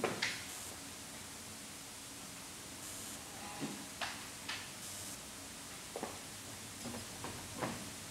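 Quiet room tone with scattered small clicks and knocks a second or two apart and a few faint creaks: people shifting and handling things while the room is hushed.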